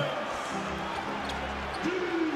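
Television broadcast of a basketball game: arena crowd noise with a basketball being dribbled on the hardwood court.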